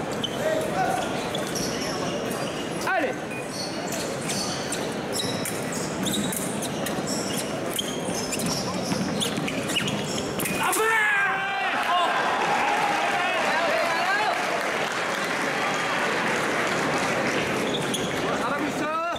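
Fencing footwork in a large hall: shoes squeaking and stamping on the piste, with short high clicks of foil blades meeting during the first half. From about eleven seconds in, voices rise in shouts across the hall.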